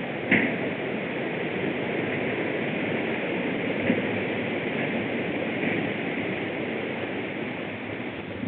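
Mountain bike rolling across a steel-grating footbridge deck and on onto a dirt trail: a steady rumble of tyres and riding noise mixed with wind on the microphone, with a sharp knock about a third of a second in.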